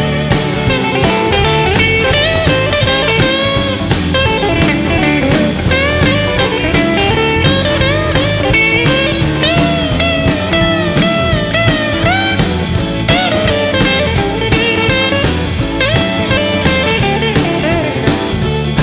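Live electric blues band playing an instrumental stretch: a lead electric guitar plays with bent notes and vibrato over bass, drums and keyboard.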